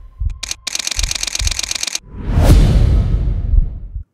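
Radio show intro stinger: a short burst of fast, rhythmic electronic music, then about two seconds in a loud, deep hit that fades away slowly.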